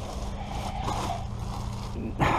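Soft rustling and scraping of blankets and plastic bags as hands push through them.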